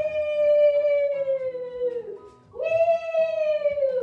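A woman's long, high "woo" calls, imitating a roller coaster ride: one held call of about two seconds with its pitch slowly falling, then a second one starting about two and a half seconds in.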